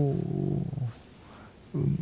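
A man's drawn-out hesitation on "eu…" that trails off in a low, creaky murmur, then a short "mm" near the end.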